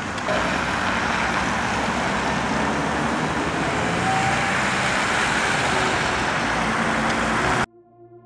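Road traffic: cars and an SUV driving past on a wet winter street, a steady rush of engine and tyre noise that cuts off suddenly near the end.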